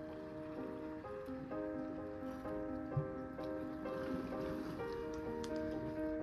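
Background music: a gentle run of held notes and chords changing about twice a second, with one brief soft thump about halfway through.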